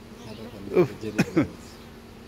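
Honeybees buzzing as a low steady hum over an opened long hive. Partway through, a man gives a few short pained exclamations ("uff") that are louder than the hum.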